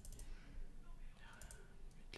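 Faint computer mouse clicks: a couple at the start and a short cluster about one and a half seconds in, as a chart drawing's settings dialog is opened.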